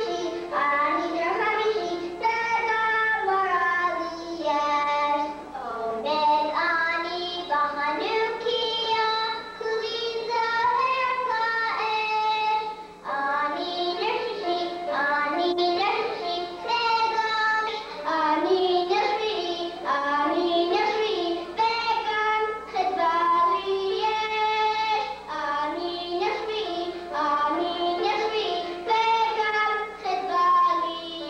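A group of children singing a song together on stage, the melody running on without a break.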